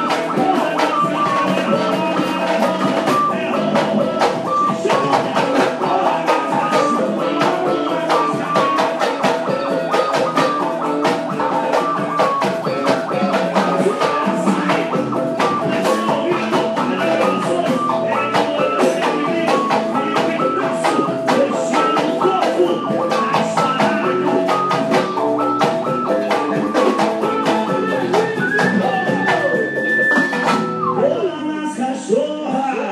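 A live band playing loud dance music: a busy melodic lead line moving in quick notes over a steady drum beat, with electric guitar.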